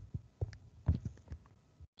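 Several faint, irregular soft taps from a stylus on a tablet as notation is written on a digital whiteboard.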